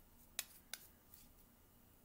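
Two short, sharp clicks about a third of a second apart from handling a Too Faced Melted Matte liquid lipstick tube as its applicator wand is drawn out for swatching; otherwise near silence.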